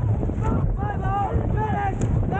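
Dragon boat crew shouting a rhythmic stroke cadence in short calls, about two a second, over heavy wind buffeting on the microphone.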